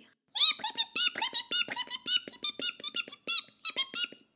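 Cartoon mouse squeaking and chattering: a quick run of short, high-pitched chirps, several a second, that rise and fall in pitch like sped-up talk.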